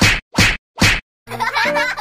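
Three quick slap sound effects, a little under half a second apart, each a sharp whack that falls away in pitch, timed to a toy fish being slapped against a face. They stop about a second in, and after a short silence music starts near the end.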